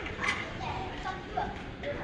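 Indistinct voices of other diners in a busy buffet hall, with a couple of sharp clinks of dishes or utensils near the start.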